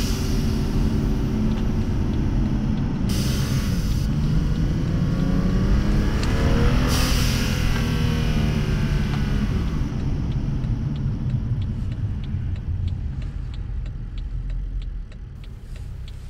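BMW 640i's N55 turbocharged inline-six revving up and lifting off, with the Turbosmart dual-port blow-off valve letting out a short whoosh three times: near the start, about three seconds in and about seven seconds in. From about ten seconds in the engine settles lower and a quick, even ticking from the direct injectors comes through, picked up by a microphone in the engine bay.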